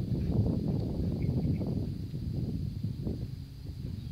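Horse trotting on arena sand: soft hoofbeats over a low, uneven rumble.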